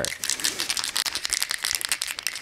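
Can of matte black spray paint being shaken, its mixing ball rattling inside in a rapid run of clicks.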